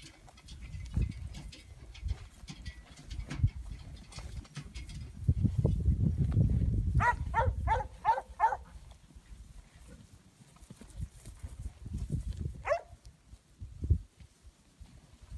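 Wind rumbling on the microphone over open grassland, with a quick run of five short, pitched animal calls about seven seconds in and one more near the end, from the yearling herd or the working dog.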